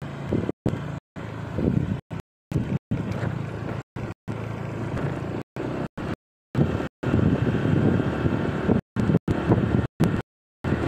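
Vehicle engine running and pulling away from a standstill, with rising road and wind noise as it picks up speed. The recording cuts out to silence for a fraction of a second many times.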